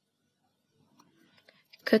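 Near quiet, with a faint snip or two about a second in from small scissors cutting monofilament beading thread close to the beadwork.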